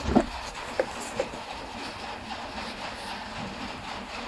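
Quiet handling noise: a few light clicks and knocks, the loudest just after the start, over a low steady hiss.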